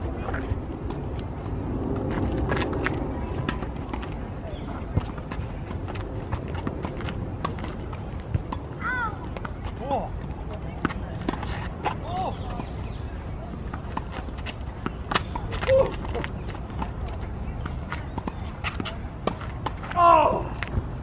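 A tennis rally on an outdoor hard court: sharp, irregular pocks of the ball off racket strings and court surface. Short distant calls and a steady low rumble lie underneath.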